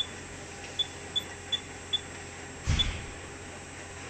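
Anritsu SSV-series checkweigher touchscreen giving short high key-press beeps, six in about three seconds, as settings are tapped in. A dull thump comes near the end, over a steady machine hum.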